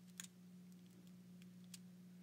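Faint clicks of a GAN 12 MagLev speed cube's layers being turned, a handful of light ticks as the magnets snap each turn into place; the clearest comes a few tenths of a second in.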